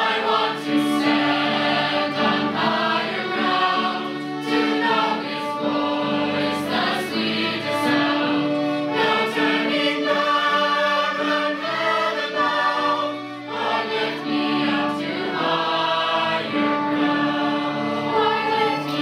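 Mixed teenage choir singing a hymn with sustained held notes, accompanied by violins.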